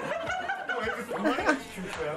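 Men laughing and chuckling in a group, mixed with bits of talk.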